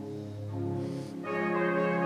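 Church organ playing slow held chords, with a fuller, brighter chord coming in a little over a second in.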